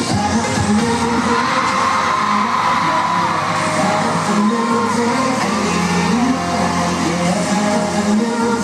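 Live pop dance song: male vocals over an electronic backing track.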